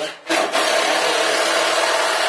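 A power tool running with a loud, steady rasping noise that starts abruptly about a quarter second in and holds level throughout.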